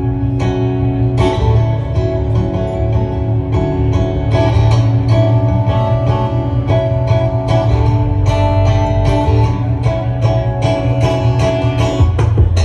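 Solo acoustic guitar played fingerstyle, amplified through a PA: held melody notes over a steady deep bass, with sharp, regular attacks from picked and struck strings.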